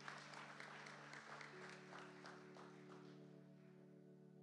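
Faint audience applause that thins out toward the end, over soft music holding sustained chords; the chord changes about a second and a half in.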